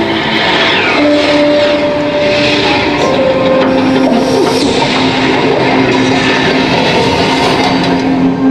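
Soundtrack of an elevator's ceiling-screen animation: long held music notes that step from one pitch to another, over a steady rushing, whooshing noise with sweeping swishes.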